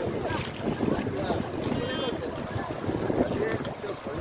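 Floodwater rushing steadily, with wind buffeting the microphone and people's voices calling out over it now and then.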